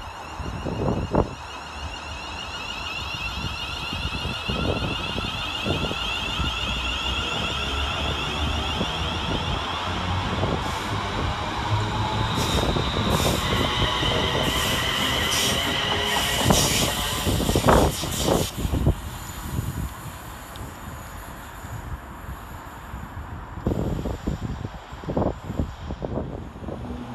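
West Midlands Railway Class 350 Desiro electric multiple unit pulling away: its traction equipment whines in several tones that rise steadily in pitch as it gathers speed, with sharp knocks of the wheels on the rails, loudest at about 18 seconds, then the sound fades as the train draws off.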